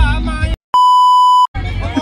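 A single steady electronic bleep, a pure high tone lasting under a second, spliced into the middle of men's chatter with a sudden cut to silence just before and after it: the kind of tone dubbed over speech to censor a word.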